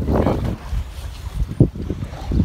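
Wind buffeting the microphone in uneven gusts, over sea water moving alongside a boat.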